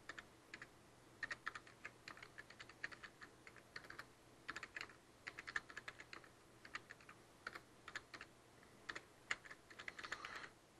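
Faint typing on a computer keyboard: irregular quick runs of keystrokes with short pauses between them.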